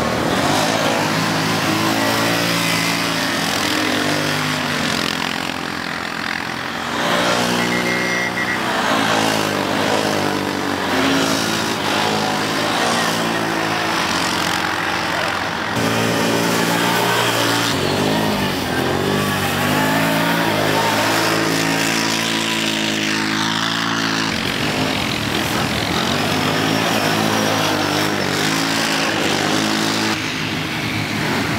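ATV engines running and revving as quads race over snow. The engine note holds and shifts in pitch, and changes abruptly several times.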